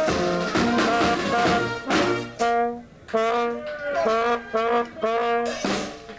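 Amateur carnival brass band playing: a phrase of held brass notes, a short break about two and a half seconds in, then a run of short punchy notes and a loud full-band hit near the end.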